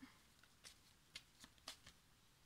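Near silence broken by a handful of faint, short ticks: cards being handled on the table.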